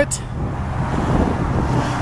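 A steady engine hum over a continuous rushing background noise.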